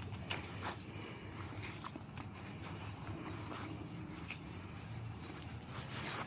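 Faint rustling and a few soft, scattered knocks as a nylon MOLLE flashbang pouch and a plastic water filter are handled, the filter being worked into the pouch.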